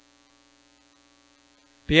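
Faint, steady electrical hum with no other sound; a man's voice starts speaking near the end.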